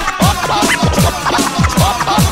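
DJ mix intro: turntable scratching over an electronic hip-hop beat, with quick falling-pitch bass hits about four times a second and sharp drum hits.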